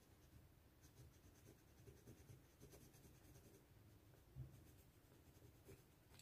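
Faint scratchy rubbing as a rub-on transfer sticker is pressed down onto a paper planner page with a small tool.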